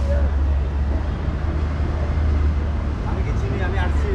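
Outdoor background noise: a steady low rumble with faint voices in the distance.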